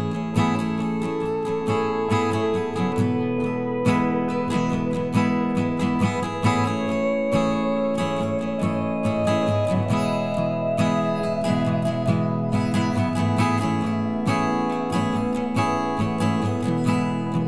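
Background music: a strummed acoustic guitar playing with a steady rhythm of regular strokes.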